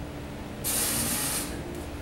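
A sharp hissing exhale through the teeth, under a second long, from a man lifting two 40 kg kettlebells in a front squat: the hardstyle 'power breathing' used to brace under load.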